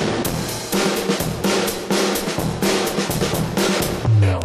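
Music with a busy drum beat of snare and bass drum.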